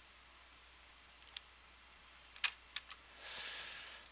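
Computer mouse clicks, a few scattered single clicks, followed near the end by a soft hiss lasting about a second, over a faint low hum.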